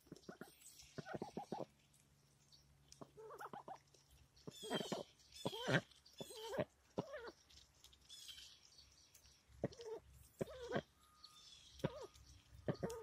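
White Pekin-type domestic ducks giving short, low quacks and chatter while they feed, in clusters of a few calls with quiet gaps between; the busiest, loudest run comes about halfway through.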